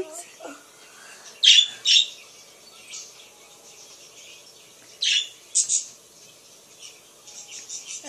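Pet budgies (budgerigars) chirping and squawking. There are sharp, loud calls about one and a half and two seconds in, two more around five seconds, and softer twittering between them that picks up near the end.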